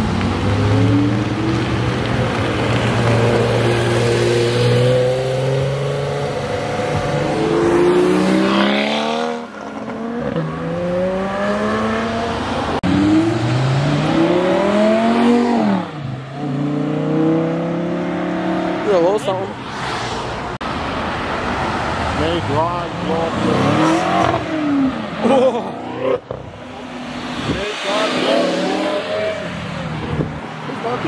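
Sports car engines revving hard as cars accelerate past one after another, the pitch climbing in repeated sweeps with a drop at each upshift. A steadier engine note fills the first few seconds before the hard pulls begin.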